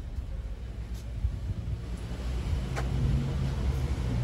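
City street traffic: a low motor-vehicle rumble that grows louder over the second half as an engine hum comes up, with a couple of faint clicks.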